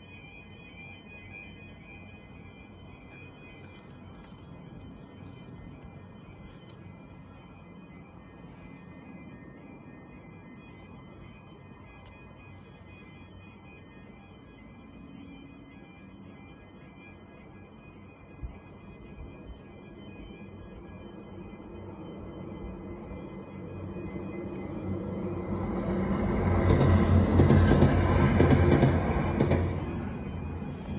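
Level crossing warning alarm sounding a steady, pulsing high tone. Over the last ten seconds a Northern Ireland Railways diesel train approaches and passes over the crossing, growing louder and loudest near the end.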